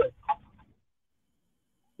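A brief trailing bit of a man's voice, then complete silence for over a second, with not even background hiss.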